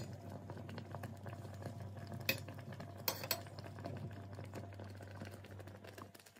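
Metal wire whisk stirring a thick chocolate mixture in a stainless steel pot, scraping against the pot, with a few sharp metallic clinks a little over two and three seconds in. A steady low hum runs underneath.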